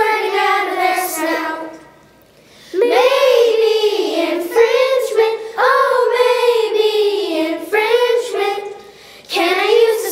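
Children singing a song, held sung notes in phrases, with a short pause about two seconds in and another near the end.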